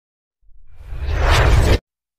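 A whoosh sound effect for an animated intro graphic, with a deep rumble underneath. It swells up from about half a second in and cuts off sharply just before the end.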